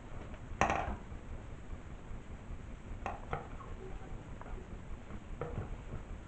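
Handling noise from a monitor's power-supply circuit board being moved about and set down on the table: a short clattering knock a little over half a second in, then a few lighter clicks and taps.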